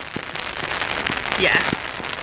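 Rain hitting an open umbrella held just overhead: a dense, continuous spatter of many small drop hits.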